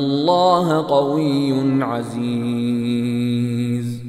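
A man chanting the Quran in Arabic in melodic tajweed recitation. His voice winds through ornamented pitch turns for about two seconds, then holds one long steady note that ends near the end.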